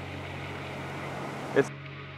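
Steady rush of river water running over rapids, with a low steady hum underneath. A short spoken word comes near the end, and the sound changes abruptly just after it.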